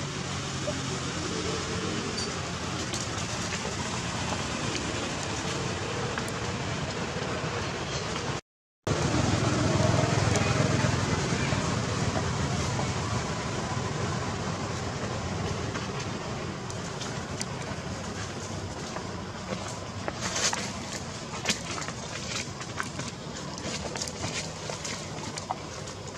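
Steady outdoor background noise with indistinct voices and a low rumble like distant traffic. The sound drops out briefly about eight seconds in, and a few sharp clicks come near the end.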